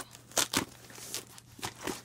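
Taped cardboard shipping box being pulled open by hand: several short crackles and rips from the cardboard flaps and packing tape.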